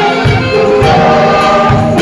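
Gospel song: a man singing lead over a band, with choir backing voices and a steady drum beat.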